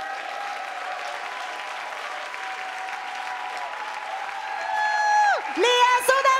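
Theatre audience applauding steadily, with long held tones over the clapping that grow louder in the last couple of seconds, one of them sliding sharply down and back up.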